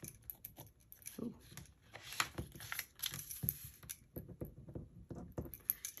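A pen writing on a small slip of paper on a desk, making faint scratchy strokes and light clicks as she test-scribbles to check that it still writes. There is a short "ooh" about a second in.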